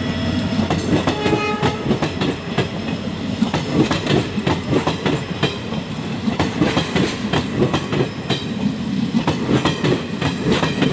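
Passenger coaches of an express train rolling past close by, the wheels clattering steadily over the rail joints.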